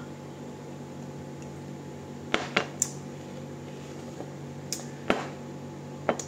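Glassware being handled: a drinking glass and a glass beer bottle, with two sharp knocks about two and a half and five seconds in, and a few lighter ticks. A low steady hum runs underneath.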